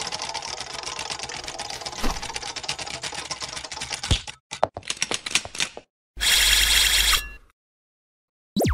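Animated-logo sound effects: a dense run of rapid clicks, like fast typing, with sharper knocks about two and four seconds in. Then come a few scattered clicks and a short loud harsh burst about six seconds in that cuts off abruptly.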